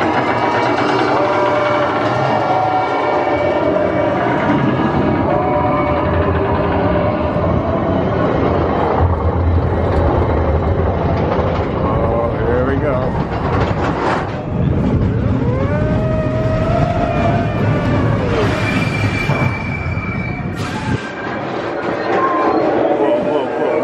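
Expedition Everest roller coaster train clattering up its chain lift and rolling along the track, a continuous rumble and rattle. Riders' voices rise and fall over it about halfway through.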